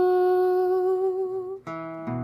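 A young woman's singing voice holds the last note of a line with a slight waver, fading out about a second and a half in, then an acoustic guitar is strummed once near the end.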